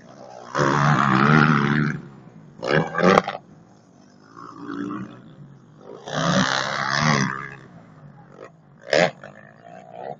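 Off-road motocross bike engine revving in about five rough bursts as the throttle is opened and shut, with the pitch rising and falling. The first burst, as the bike passes close by, is the longest and loudest.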